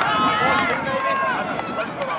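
Several voices calling out and chattering at once, overlapping, from ultimate frisbee players and sideline teammates.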